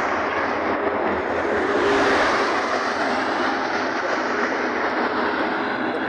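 Road traffic passing close by: a steady rush of vehicle and tyre noise that swells about two seconds in as a car goes past.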